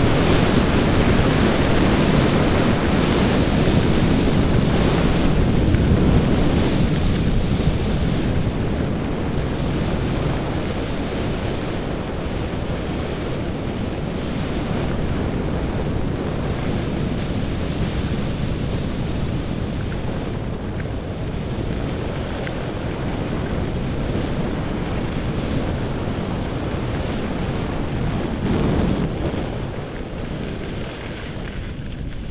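Wind rushing over the camera microphone of a skier moving downhill, mixed with the steady hiss of skis sliding on packed snow; loudest over the first several seconds, then easing off a little.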